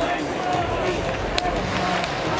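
Stadium crowd hubbub with indistinct voices and an echoing public-address voice in the background, and one sharp click about one and a half seconds in.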